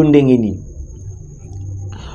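A man's voice: one drawn-out syllable at the start, falling in pitch over about half a second. Then a pause with only a low hum and a faint steady high whine.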